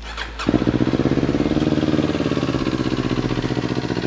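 Kawasaki Z400SE's 399 cc parallel-twin engine, breathing through a large aftermarket slip-on exhaust, starts about half a second in and settles into a steady idle. The exhaust note is one the dealer calls sweet.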